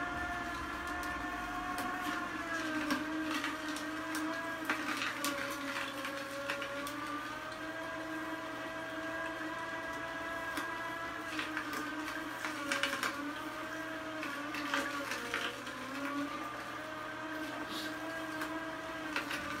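Vertical slow (masticating) juicer grinding carrot sticks: a steady motor whir whose pitch sags and recovers as each carrot loads the auger, with scattered sharp cracking as the carrots are crushed.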